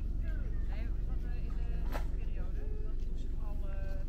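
Voices of people talking in the background, too indistinct to make out, over a steady low rumble. There is a single sharp click about two seconds in.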